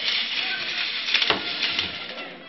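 Eggs rattling and knocking against each other in a sieve as it is shaken for egg shackling, with a few sharp clicks, over the chatter of a crowd of children.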